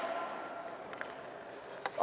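Quiet ice rink ambience: a faint steady hum with two light clicks, one about halfway through and one near the end.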